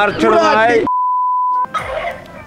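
Voices chanting a repeated phrase, cut off abruptly by a single steady electronic beep: one pure tone held for under a second, an inserted edit sound at a scene transition.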